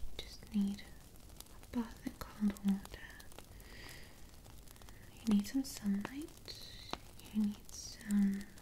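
A woman whispering softly in short, broken phrases, with brief murmured syllables and light clicks scattered between them.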